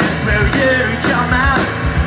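Live rock band playing: electric guitars, bass guitar and drum kit, with a lead vocal singing over them.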